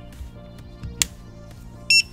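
A P13 NAND programmer: a single sharp click about a second in as its socket lid latches shut on the NAND chip, then a short high electronic beep near the end as it detects the chip. Quiet background music underneath.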